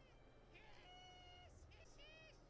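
Near silence, with a few faint, short high-pitched calls and one brief held tone near the middle.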